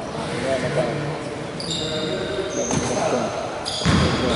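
A basketball being dribbled on a hardwood gym floor, with an impact just before the end. High-pitched squeaks come and go over the second half, and voices carry in the echoing hall.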